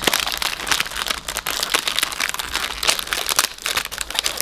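Plastic wrapper of a Double Stuf Oreo cookie pack crinkling as its peel-back seal is pulled open, a dense run of crackles.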